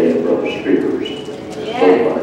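A person's voice, heard indistinctly, in short voiced stretches with a louder burst near the end.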